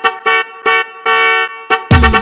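Disco dance remix break of short, brassy horn-like stabs repeated in a quick rhythm, one held for about half a second. A heavy kick-and-bass beat comes in near the end.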